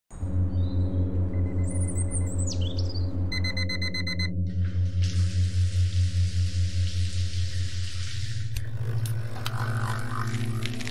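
A slow, pulsing low synth drone as background music, with a few high falling glides early on. About three and a half seconds in, a rapid electronic beeping sounds for about a second, then a steady hiss of shower water running for about four seconds, which cuts off suddenly.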